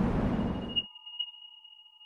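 Road and wind rumble from a moving vehicle, which cuts off abruptly less than a second in. A thin, steady, high electronic tone with fainter lower tones stays on after it.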